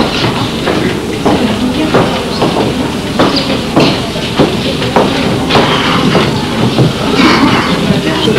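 Classroom hubbub: many children's and adults' voices talking at once, with irregular knocks and rustles, recorded on an old camcorder.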